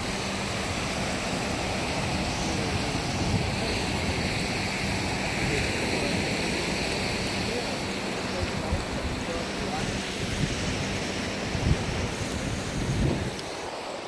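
Ocean surf washing steadily onto a sandy beach, with wind buffeting the microphone.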